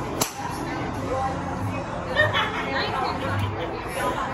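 A golf club striking a teed ball off a hitting mat: one sharp crack just after the start. Voices and chatter carry on around it.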